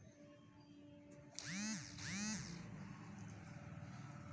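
Two short vocal calls about half a second apart, each rising and then falling in pitch, over a faint steady hum.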